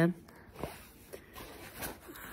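A woman's high, sing-song baby talk trails off at the very start, then it is quiet but for three faint clicks and soft rustles of handling.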